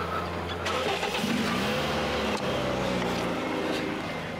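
A taxi's car engine starting and revving, rising in pitch about a second in and then running steadily.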